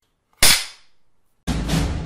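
A single sharp bang-like sound effect about half a second in, with a short ringing tail, followed about a second later by music starting up.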